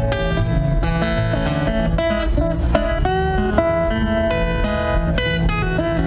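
Acoustic guitar strummed and picked in a steady country-blues rhythm, chords over a moving bass line.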